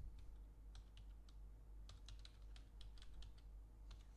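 Faint typing on a computer keyboard: a string of light, uneven key clicks, most closely spaced a little past the middle.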